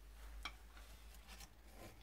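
Near silence: room tone with a faint steady low hum and a couple of faint ticks.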